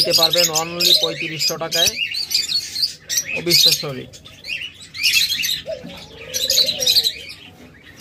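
Many caged aviary birds chirping: quick, high calls overlapping one another throughout.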